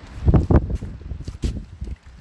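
Wind buffeting a phone's microphone in low rumbling thumps, with footsteps and handling knocks while the phone is carried at a hurry; the two loudest thumps come in the first half second.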